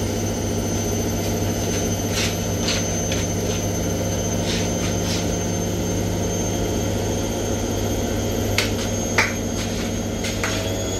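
Washing machine with its drum spinning: a steady motor hum and high whine, broken by a few short clicks, two of them close together near the end.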